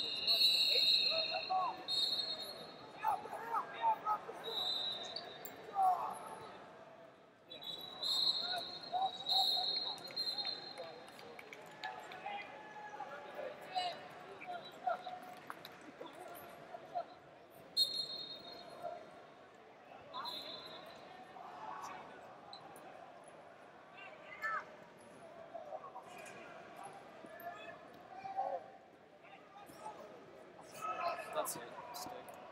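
Wrestling arena ambience: indistinct voices of coaches and onlookers echoing in a large hall, with short high-pitched whistle blasts several times and scattered knocks and thuds.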